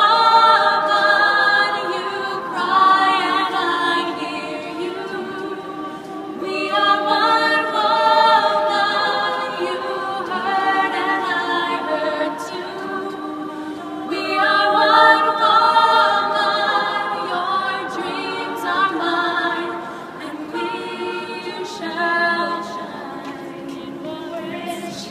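Women's a cappella ensemble singing sustained close-harmony chords without instruments, the voices swelling louder about every seven or eight seconds.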